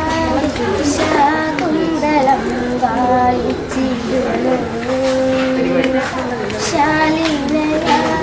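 A young girl singing solo, holding long notes that slide smoothly from one pitch to the next.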